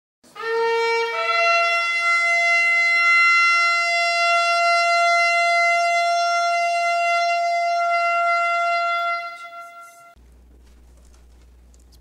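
Shofar blast: a short lower note that jumps up to one long held note, fading out after about nine seconds. A low steady hum follows.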